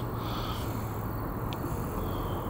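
Steady low background rumble with a constant hum, and one faint tick about one and a half seconds in.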